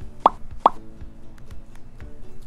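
Two short rising 'bloop' pop sound effects about half a second apart, cueing rating numbers popping up on screen, over quiet background music with steady held notes.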